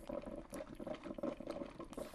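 Drip coffee maker gurgling faintly as it brews, with light scrapes of a spoon scooping sugar from a paper cup.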